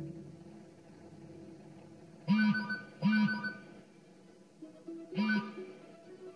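A phone ringing: three short electronic rings, the first two close together and the third after a pause, over faint background music.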